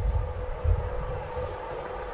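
A low rumble with a faint steady hum beneath it.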